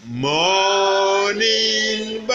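A small group singing a hymn unaccompanied, holding long notes; the voices slide up into the first note and move to a new note about one and a half seconds in.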